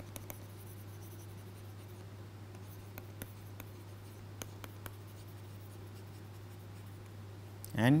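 Stylus writing on a tablet screen: faint scattered taps and scratches as words and figures are written by hand, over a steady low hum.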